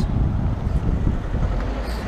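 A steady low rumble of outdoor street noise, with no distinct single event.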